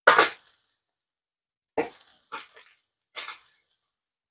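Salmon fillets frying in hot butter in a non-stick pan, sizzling and spitting in a few short bursts.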